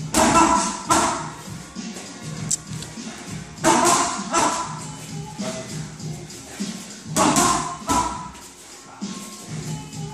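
Background music over gloved punches and kicks landing on held striking pads: a few sharp hits in short combinations, a few seconds apart.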